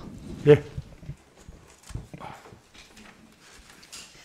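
A short spoken "yes" (네), then faint hearing-room background: scattered soft knocks and rustles with a distant murmur of voices.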